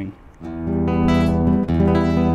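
Nylon-string chords strummed on a Godin ACS Slim SA electric-acoustic guitar, coming in softly and growing louder over the first second, with fresh strums after about a second and again near the end.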